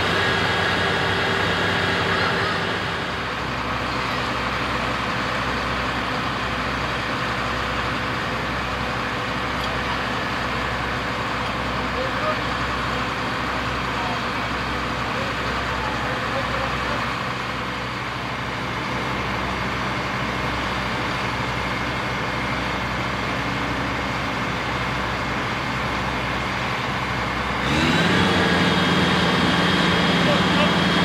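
Heavy diesel engine of construction machinery running steadily, then stepping up to a higher, louder engine speed near the end.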